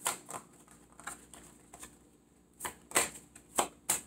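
Tarot deck being shuffled by hand: scattered light card taps and flicks, a few louder snaps in the second half.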